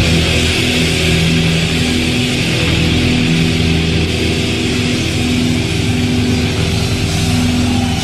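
Thrash metal band playing live: heavily distorted electric guitars hold long sustained chords over drums and a steady wash of cymbals.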